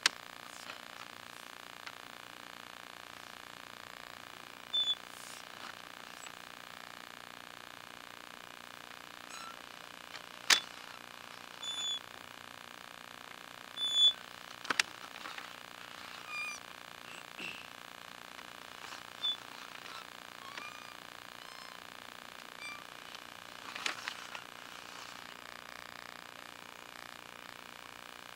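Steady electrical hiss and hum from a sewer-inspection push camera's recording system, with a few scattered sharp clicks and short high squeaks as the push cable is pulled back out of the line.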